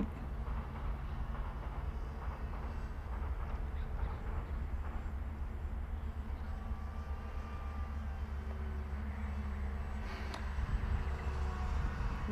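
Steady wind noise on the microphone, with the faint whine of a small RC flying wing's electric motor and propeller flying high overhead, its pitch shifting a little in the second half.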